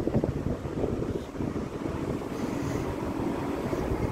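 Wind rumbling on a phone's microphone outdoors, with city street traffic underneath and a faint steady hum in the second half.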